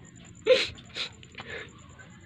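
A dog whimpering in short cries: the loudest comes about half a second in, with weaker ones at about one second and a second and a half.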